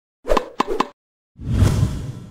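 Logo intro sound effect: three quick hollow pops in the first second, then a deep whooshing rumble that swells about a second and a half in and starts to fade.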